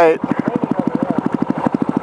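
Single-cylinder dual-sport motorcycle engine idling, a steady, quick, even putter.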